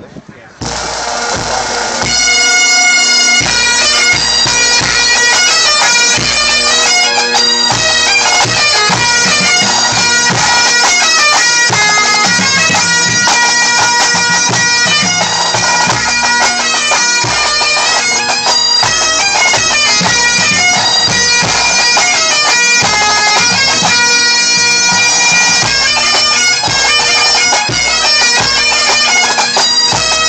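A pipe band playing: Great Highland bagpipes with steady drones under the melody of the chanters, with snare and bass drums. After a brief drop at the start, the pipes come in loud about two seconds in and play on steadily.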